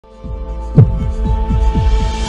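Intro sound design for an animated logo: a low drone swells in, a deep hit lands just under a second in, then a run of short, low, downward-sliding pulses about four a second, like a quickening heartbeat, leading into music.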